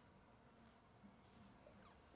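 Near silence: room tone in a pause between speech, with a faint thin high tone coming and going.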